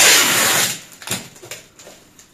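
Clear packing tape pulled off its roll with a loud rasp lasting under a second, followed by two short, softer rustles of the plastic wrapping.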